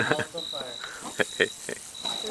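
Crickets trilling in short repeated bursts at one steady high pitch, with two or three sharp clicks a little past the middle.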